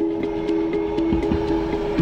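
Background music: a held chord over a steady ticking beat, about four ticks a second.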